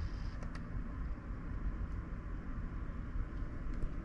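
Steady background noise, a low rumble with a hiss over it, with a couple of faint clicks near the start.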